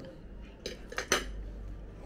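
Metal forks clinking against dinner plates while eating: a few sharp clinks, one a little over half a second in and two about a second in, the last the loudest.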